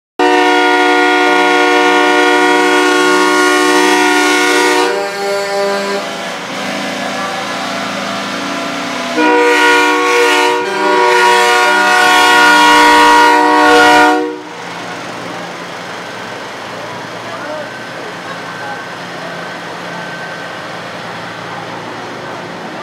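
Semi-truck air horns sound in two long, chord-like blasts. The first lasts about five seconds at the start; the second runs from about nine seconds to fourteen seconds. Between and after the blasts there is a quieter, steady low hum of idling truck engines.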